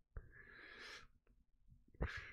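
A man's breathy exhale, blowing out a lungful of joint smoke, lasting under a second.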